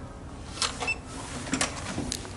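Electronic hotel door lock taking a paper key card: the card slides into the slot with a few light clicks, a short high beep sounds a little under a second in as the lock accepts the card, and the lever handle clicks near the end.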